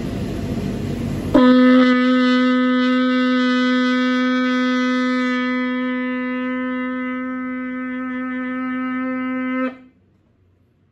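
Sable antelope horn shofar blown in one long, steady note with many overtones. The note starts about a second and a half in, after a short rushing noise, and is held for about eight seconds before it cuts off; the blower calls it an awesome sound.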